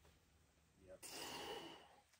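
A climber's forceful, hissing exhale lasting about a second, starting about a second in, as he strains through a move on the boulder.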